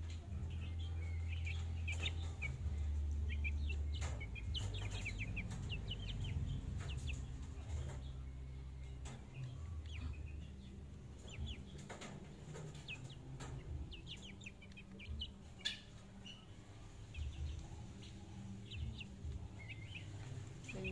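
Half-grown chickens in a cage peeping and chirping with many short, high calls, over a steady low hum that is loudest in the first half. A few sharp knocks sound now and then.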